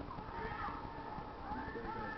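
Quiet room with a faint, high voice making a few brief rising-and-falling sounds.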